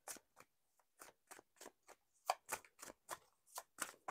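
A deck of tarot cards being shuffled by hand: a quiet, irregular run of short card snaps and flicks, several a second.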